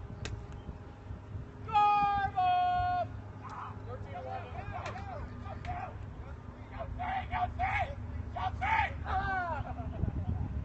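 A voice calls out loudly in two long, level notes, the second a little lower, about two seconds in. Fainter talking voices follow for the rest.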